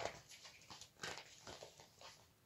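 Pages of a paperback picture book being turned by hand: a few faint paper swishes and rustles.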